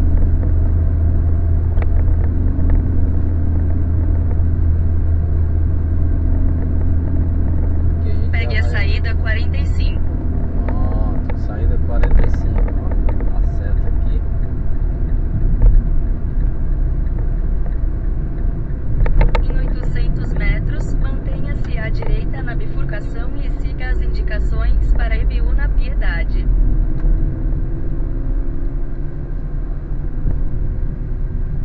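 Steady low engine and road rumble inside a moving car's cabin, picked up by a windscreen-mounted camera; the engine note rises and falls gently in the later part.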